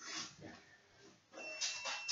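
A man's faint, hard breathing: a few short breaths, out of breath from a minute of jumping exercises.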